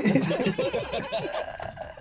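Men laughing and snickering, loudest at the start and dying down toward the end.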